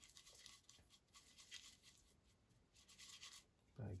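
Paintbrush scrubbing through acrylic paint on a palette as colours are mixed: faint, repeated rubbing strokes.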